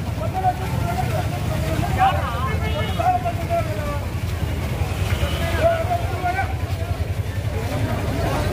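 Voices of a large marching crowd over a steady low rumble, with no one voice standing out.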